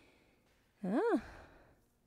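Speech only: a woman says a single short 'hein?' with rising then falling pitch, trailing off into breath.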